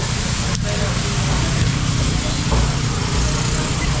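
Steady background din of a busy open-air market: a low rumble under an even hiss, with faint distant voices and a single sharp click about half a second in.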